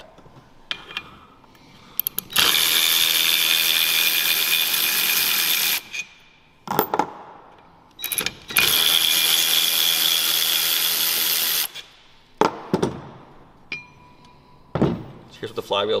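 Cordless electric ratchet running twice, about three seconds each time, with a steady motor whine and ratchet buzz, spinning the shoulder bolts out to remove the sprung hub from the flywheel. A few short knocks of metal parts being handled come between and after the runs.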